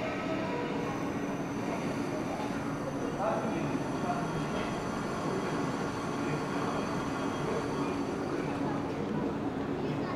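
JR West 117 series 7000-subseries electric multiple unit ('WEST EXPRESS Ginga') rolling slowly into a station platform and drawing to a stand, with a steady running and rolling noise from the train. A crowd chatters throughout.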